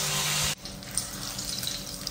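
A loud, steady hiss stops abruptly about half a second in, giving way to fish frying in oil in a pan on a gas stove: a quieter sizzle with scattered crackles and pops.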